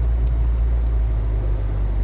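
Low, steady rumble of a Jeep Wrangler's engine, heard from inside the cab.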